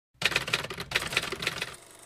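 A quick, irregular run of typewriter key strikes, about eight to ten a second, starting just after the beginning and stopping shortly before the end.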